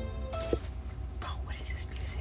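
Music playing through the car's speakers: a held note that stops about half a second in with a sharp click, then a brief sliding voice near the end, over a steady low rumble.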